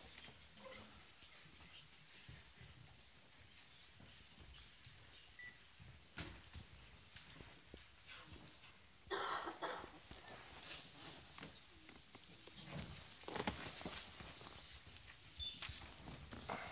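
Quiet hall ambience: faint shuffling and rustling from a seated audience, with a louder short burst of rustling about nine seconds in.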